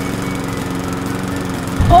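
Walk-behind petrol lawn mower engine running steadily.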